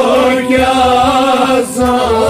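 A male voice singing a Kashmiri Sufi song in long, held, gently wavering notes, with a drum beating underneath.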